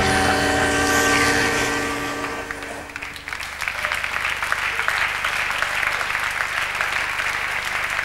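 A held musical chord ending the sketch, fading out about three seconds in, followed by an audience applauding over a steady low hum.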